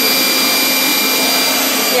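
Rowenta Air Force Extreme cordless stick vacuum running at a steady speed: a constant rush of air under a high, steady motor whine.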